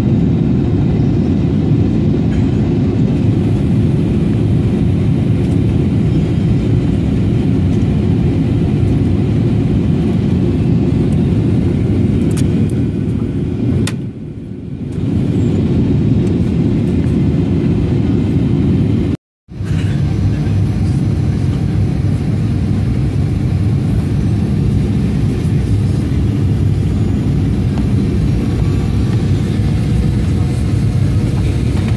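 Steady low drone inside the passenger cabin of a Ryanair Boeing 737 descending on approach: jet engine and airflow noise. The drone eases off for a moment about halfway through, then cuts out completely for a split second a few seconds later.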